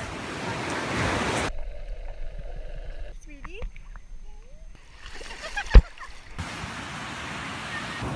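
Ocean surf and wind noise, giving way for a few seconds to quieter water sloshing, with one loud, sharp thump a little before six seconds in; the steady surf hiss comes back after it.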